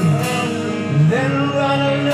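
Live rock band playing a slow ballad: sustained electric guitar chords and bass, with a male voice singing over them.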